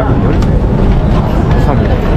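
Busy city pavement ambience: a crowd's chatter over a steady low rumble.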